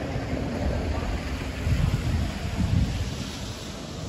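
Wind buffeting the microphone: an uneven low rumble that swells in gusts, strongest in the middle, over a steady outdoor hiss.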